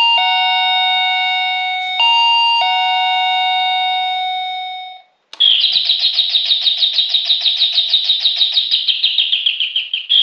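SilverCrest wireless doorbell's plug-in receiver playing an electronic ding-dong chime, a high note falling to a lower one, sounded twice and fading out about five seconds in. After a brief pause it plays a different melody, a fast warbling birdsong-like chirp of about five chirps a second.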